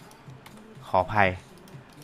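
A man's short vocal sound, rising in pitch, about a second in, over faint clicking from computer input.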